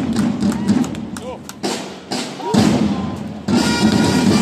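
Drums beating with thumps, joined about three and a half seconds in by long, steady held notes from the brass of the flag-wavers' musicians.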